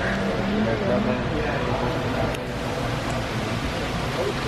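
Indistinct chatter of other people talking, over a steady low rumble.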